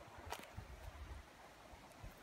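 Quiet outdoor background: faint, uneven low rumbles of wind on the microphone, with one short sharp click about a third of a second in.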